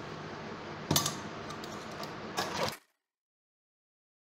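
Cloth and sewing-machine parts being handled as fabric is positioned under the presser foot: a sharp click about a second in, then a few softer clicks and rustles, over a steady hiss. The sound cuts off suddenly to dead silence shortly before the end.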